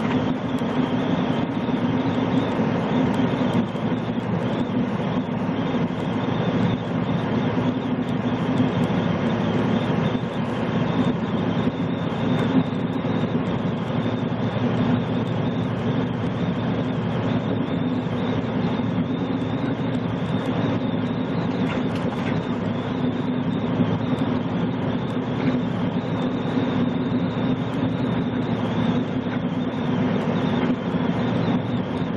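Semi truck cruising at highway speed, heard from inside the cab: a steady drone of the diesel engine and tyre roar on the pavement, holding an even level throughout.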